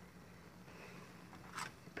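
Quiet, with a faint steady hum; about one and a half seconds in, a brief scrape as a screwdriver is picked up off the worktop.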